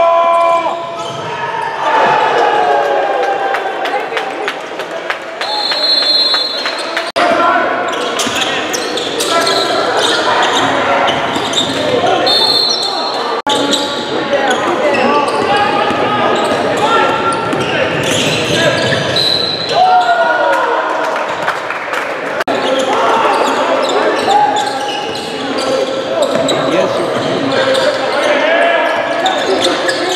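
A basketball bouncing on a hardwood gym floor during game play, with crowd and player voices and echo from the large hall. Two brief high-pitched tones sound about six and twelve seconds in.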